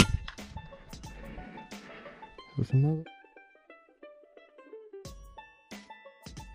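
Background music of plucked strings, mandolin-like, playing throughout. A sharp knock is the loudest thing at the very start, and a short low voice-like sound comes in at about two and a half seconds.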